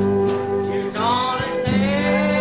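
Country band playing an instrumental break on electric guitars over steady bass notes, with a lead line that bends up in pitch about a second in.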